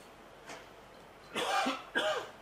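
A man coughing and clearing his throat, twice in quick succession near the end.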